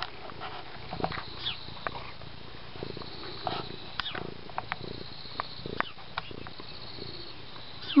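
Domestic cat purring steadily close to the microphone, with scattered short clicks and rustles.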